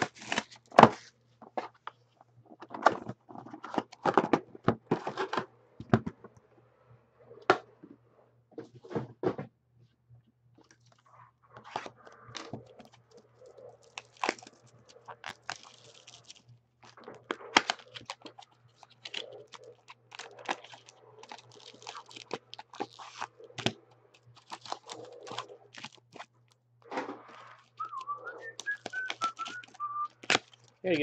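Plastic shrink wrap torn off a hobby box of trading-card packs, then foil card packs crinkled, handled and torn open. Repeated crackling and tearing with the odd knock, over a steady low hum. A short wavering high tone comes in near the end.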